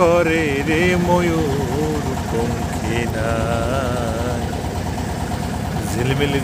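A song, a single voice singing a wavering melody with a long held note about midway, over the steady low running of a boat engine.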